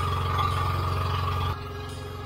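Motorized outrigger boat's engine running steadily, a low drone with a thin steady whine above it. About one and a half seconds in it drops to a lower level.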